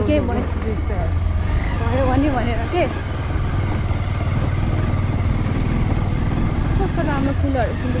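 Motorcycle engine running steadily as the bike rides over a rough stony dirt track, a continuous low drone.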